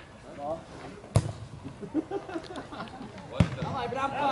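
A football being kicked twice, two sharp thuds a little over two seconds apart: the corner kick struck about a second in, the louder of the two, then a second strike on the ball near the goalmouth. Players shout faintly in between.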